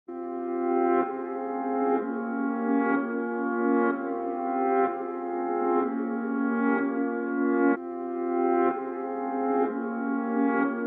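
Intro of a trap instrumental in F minor: sustained, horn-like brass chords that swell about once a second and change chord every few seconds, with little bass underneath.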